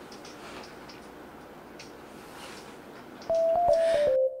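Faint hiss with scattered light crackles, then about three seconds in a much louder steady beep tone that shifts slightly in pitch, as in an old-film countdown intro sound effect.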